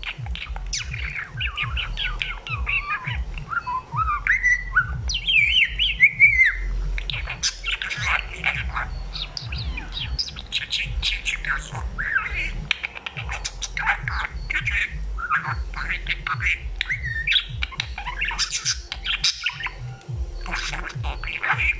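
Male budgerigar chattering: a fast, unbroken warble of chirps, clicks and squawks, with a few rising whistled glides about five seconds in.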